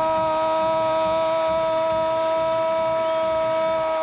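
Football commentator's long held goal cry, a single unbroken high note on the "o" of "gol", which cuts off suddenly at the end.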